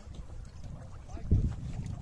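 Wind rumbling and buffeting on the microphone outdoors, with one louder low thump a little past halfway.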